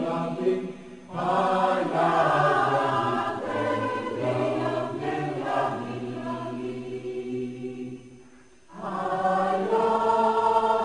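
A choir sings a slow cantata, with a low note held beneath the upper voices through the middle. The singing breaks briefly about a second in, fades almost to nothing about eight seconds in, then the voices come back in.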